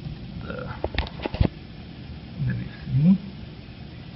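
Computer mouse clicks, four in quick succession about a second in, followed by a man's short wordless hesitation sounds rising in pitch.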